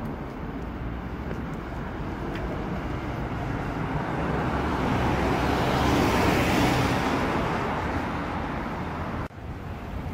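Jet airliner passing overhead: a broad engine roar that swells to its loudest about six seconds in, then fades, and cuts off abruptly just after nine seconds.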